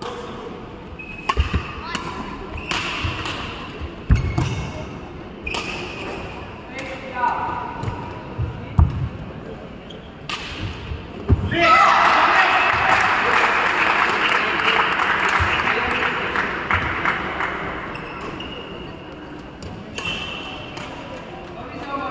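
Badminton rally on an indoor court: sharp racket strikes on the shuttlecock and feet thudding on the court mat, with a heavy thud about eleven seconds in. Then spectators cheer loudly for several seconds, dying away.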